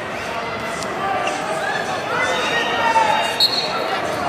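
Many voices echoing through a large arena, then a short, sharp referee's whistle about three and a half seconds in, restarting the wrestling from referee's position.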